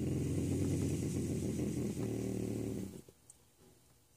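Young bobcat growling, a low pulsing growl that breaks off for a moment about two seconds in and stops about three seconds in.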